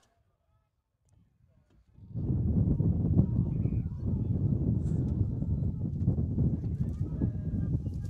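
Wind buffeting an outdoor microphone: a loud, fluctuating low rumble that starts suddenly about two seconds in, after near silence.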